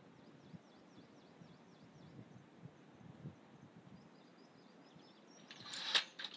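Faint, high, short chirps of a small bird repeating over quiet forest background, followed by a brief louder noisy burst near the end.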